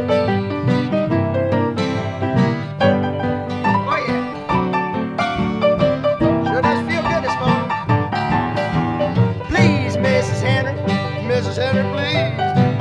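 Acoustic guitar playing an instrumental break in a folk-rock song, strummed chords with picked notes. A high, wavering lead line comes in over it about four seconds in and again near the end.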